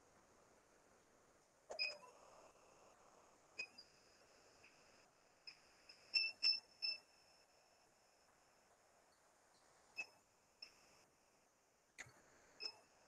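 A handful of faint, short clicks from a computer mouse, a few seconds apart with a quick cluster of three near the middle, each with a brief ringing edge, over low hiss.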